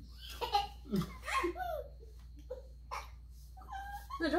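People laughing in short bursts, strongest in the first second or two, with a few brief sounds of laughter later.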